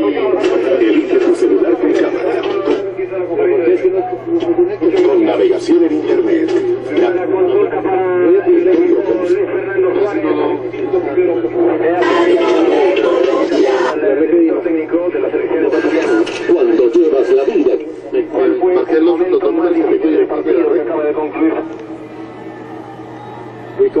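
Muffled, narrow-band voices from a radio feed playing over the control-room monitor speakers, with a steady low hum underneath. It drops quieter about 22 seconds in and comes back at the end.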